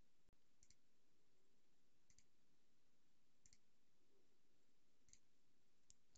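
Faint computer mouse clicks, four of them about a second and a half apart, each a quick double tick, over near-silent room tone.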